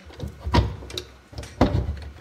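A window being shut: two dull knocks about a second apart, with smaller clicks and rattles around them.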